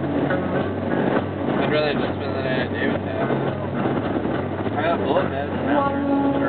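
Steady road and engine drone inside a car cruising at highway speed, with indistinct voices over it.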